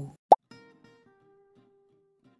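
A single plop sound effect about a third of a second in, followed by soft plucked-string notes of an intro jingle.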